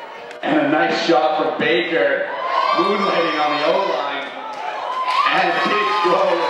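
Excited voices shouting and cheering as a point is scored. The sound jumps in suddenly about half a second in and stays loud, with drawn-out yells.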